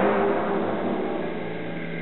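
Opera orchestra holding a low sustained chord that fades gradually, with faint higher notes entering near the end.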